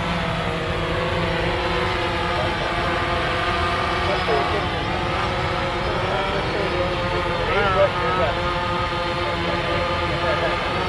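Quadcopter drone's rotors whining as it lifts off and climbs to a hover, a steady chord of tones that wavers in pitch now and then, over a low rumble of wind on the microphone.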